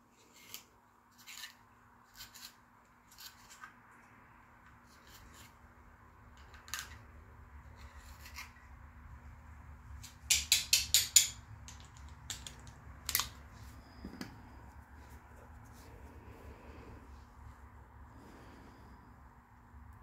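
Scattered light clicks and taps, with a quick run of about seven clicks about halfway through, over a faint steady low hum.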